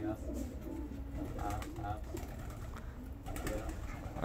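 Domestic pigeons cooing softly over a steady low background rumble.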